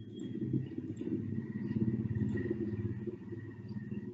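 A low rumble that swells up, is loudest about halfway through and dies away near the end.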